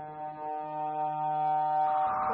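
1978 Serge Paperface modular synthesizer sounding a steady drone of several held pitches, the low one briefly dropping out about half a second in. Near the end the low tone stops and a noisy wash comes in.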